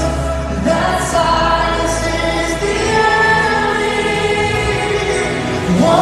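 Live worship song played through an arena sound system: sung melody over a full band with keyboards and a steady bass, the voices holding long notes.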